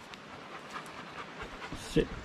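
German Shepherd panting softly close by, with one brief knock right at the end.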